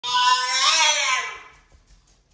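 French bulldog giving one long, loud whining call that rises a little in pitch, then falls away and fades out after about a second and a half: a demand for its supper.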